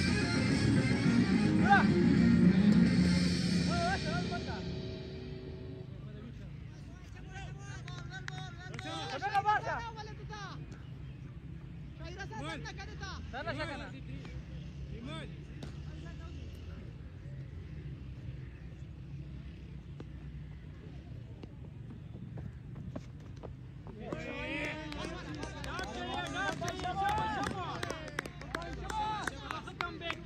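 Background voices and music: loudest in the first four seconds, then voices on and off over a steady low hum.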